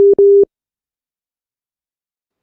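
Video-call connection-drop tone: two short electronic beeps at one steady pitch, the second a little longer, then the sound cuts out completely as the call loses its connection and starts reconnecting.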